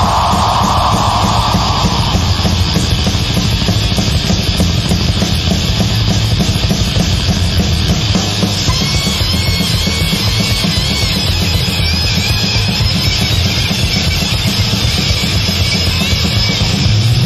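Death metal band on a 1989 demo tape: distorted guitar, bass and drums playing fast and dense. A high wavering line comes in about halfway through.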